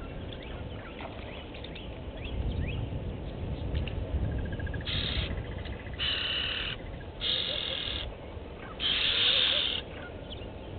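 Bush ambience: small birds chirping, a brief rapid ticking call, then four loud rasping bursts of about half a second to a second each, the last the loudest, over a low outdoor rumble.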